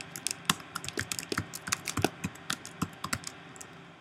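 Typing on a computer keyboard: a quick, uneven run of keystroke clicks as a line of text is entered.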